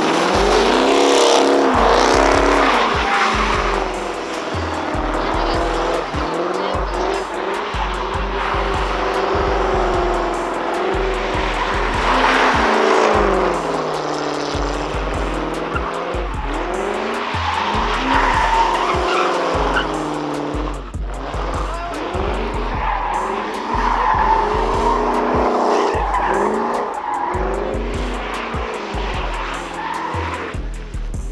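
Chrysler 300 sedan doing donuts: the engine revs up and down while the tyres squeal in repeated surges every few seconds.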